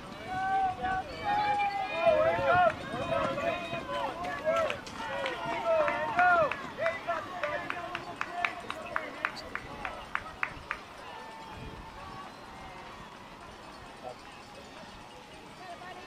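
Spectators shouting encouragement at passing cross-country runners, in high, strained voices for the first several seconds. Rhythmic clapping at about three claps a second follows from about halfway in, then it dies down to quiet open-air background.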